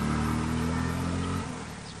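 A motor vehicle's engine running steadily, fading away about a second and a half in.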